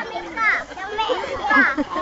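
Voices talking and calling over one another, some of them high-pitched like children's.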